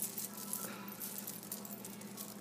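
Beads and small metal charms on a beaded chunky charm clicking and clinking lightly against each other as fingers handle it: a run of quick, small ticks.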